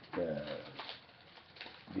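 A man's drawn-out "uh" of hesitation, a low hum lasting about half a second, then a quiet pause before he speaks again.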